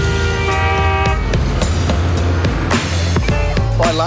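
Background music with a steady low beat, with a car horn held for about a second near the start over traffic noise.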